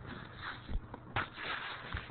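A few soft, low thumps with some rustling, over a steady low hum.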